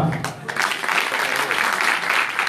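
Audience applauding, the clapping building up about half a second in and going on steadily.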